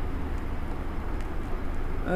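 A steady low rumble in the room, with a few faint scratches of a marker writing on a whiteboard.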